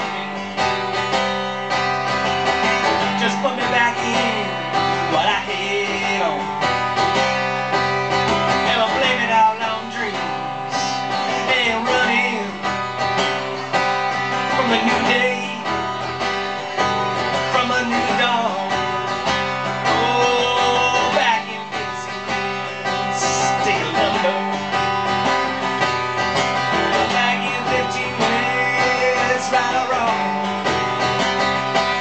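Live music: an acoustic guitar played on stage, a passage of steady, ringing chords.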